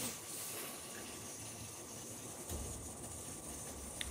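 Faint, steady hiss of brewhouse background noise, with a low rumble joining about two and a half seconds in.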